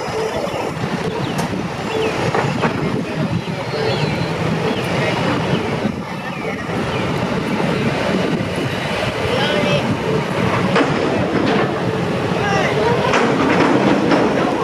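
Heavy trucks and a wheel loader running at close range, with scattered knocks and clanks, over indistinct voices.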